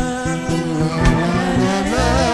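Live worship music: a man's voice singing long held notes through a microphone over electric keyboard and drums.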